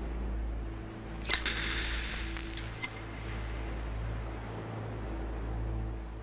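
Low, steady background-music drone with two sharp hits about a second and a half apart, the first followed by a brief shimmer.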